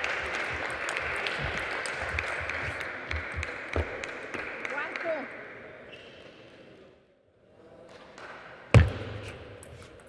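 Table tennis rally: the ball clicks sharply off the rackets and the table over a steady crowd murmur, which fades away after about five seconds. Near the end comes one loud, sharp knock.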